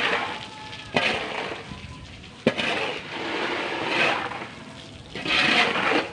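Shovel scooping and scraping wet concrete mix on a concrete floor, in repeated strokes with sharp scrapes about a second and two and a half seconds in.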